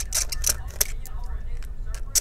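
Small Phillips screwdriver backing a battery screw out of a laptop chassis: a run of light, sharp clicks, most of them in the first second, over a low steady hum.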